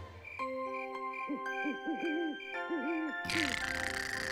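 Owl hooting in two runs of short rising-and-falling hoots, over soft held music notes and a light tick about twice a second. A breathy rushing sound starts near the end.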